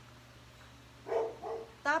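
A dog barking twice, briefly, about a second in, the first bark louder.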